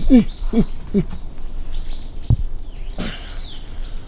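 Small birds chirping repeatedly in short high arched notes. Three short low falling sounds come in the first second, and a single dull thump comes just past the middle.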